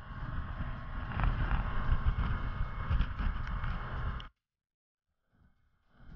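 Motorboat underway with wind buffeting the camera microphone, a loud rough rumble that cuts off suddenly about four seconds in; after a moment of silence a similar boat-and-wind sound starts again near the end.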